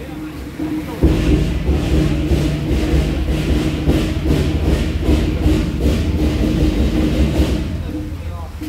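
Temple-procession percussion, drum and cymbal strokes beating a steady rhythm about three a second, starting about a second in, with voices over it.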